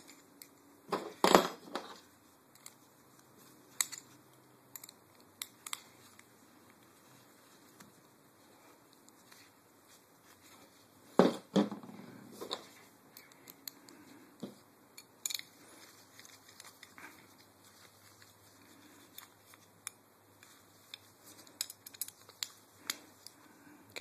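Parts of an airsoft MP7 rail adapter being handled and fitted, with scattered clicks and knocks of hard parts, the loudest about a second in and about eleven seconds in. A run of small ticks near the end comes as its screws are started with a hex key.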